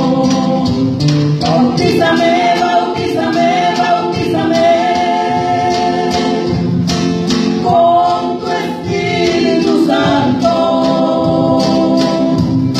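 Gospel praise song performed by a band: several voices singing long held notes together over a drum kit.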